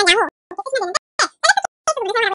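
A person speaking: fast tutorial narration with no other clear sound.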